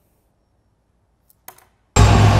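Near silence, then a few short sharp glitchy clicks about a second and a half in, and a loud sudden hit with a deep boom at the very end: the opening of a logo sting sound effect.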